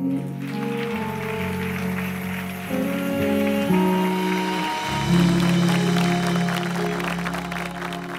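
A live pop band of keyboard, guitars and saxophone plays the song's closing held chords, with bass notes changing a few times. The audience applauds over the music as the song ends.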